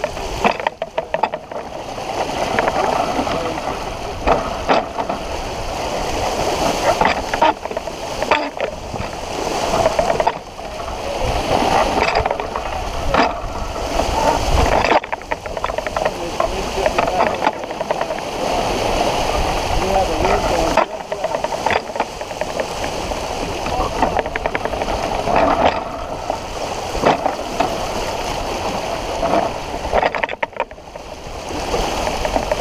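Water rushing and splashing along the hull of a sailboat under way, with uneven gusts.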